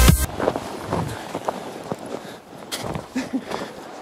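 Electronic dance music cuts off abruptly just after the start, leaving irregular crunching footsteps on packed snow.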